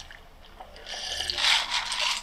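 A person sipping a drink from a plastic cup: a breathy slurp that starts about half a second in, swells, and stops as the cup comes down.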